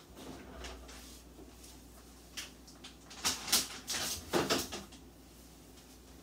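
Refrigerator door opened and items set onto its shelves: a few short knocks and clunks between about two and a half and four and a half seconds in, over a low steady hum.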